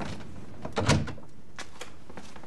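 Someone coming in at a doorway: a dull thump about a second in, with a few lighter knocks around it.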